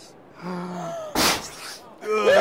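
A person's low drawn-out voiced 'ooh', then a short, sharp gasp a little past the middle, then more voice.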